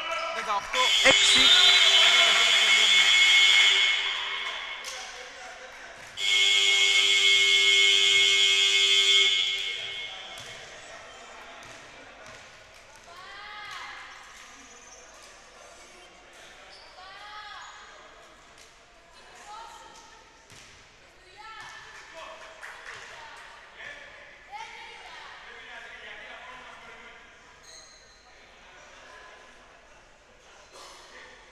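Basketball scoreboard buzzer sounding two long blasts of about three seconds each, the second starting about six seconds in, marking the end of the first ten-minute period. Faint voices and knocks in the gym follow.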